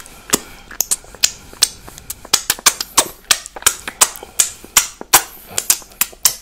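Wet finger-licking and lip-smacking mouth sounds close to the microphone: a quick, irregular run of sharp wet clicks and smacks, several a second.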